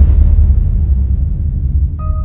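Deep rumbling tail of a cinematic boom hit in the soundtrack, fading slowly.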